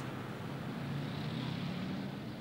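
Street traffic: a steady low engine rumble with road noise, swelling slightly about a second in.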